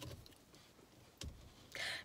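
Quiet room with a few faint, brief handling or movement noises: a short soft knock a little after a second in, and a brief hiss just before the end.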